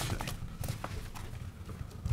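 A few light, irregular clicks and taps of papers and small objects being handled on a meeting table, picked up by desk microphones over a low room hum.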